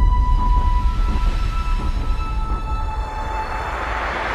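Cinematic intro sting: a deep, steady bass rumble with thin, high ringing tones over it, and a hiss that swells toward the end.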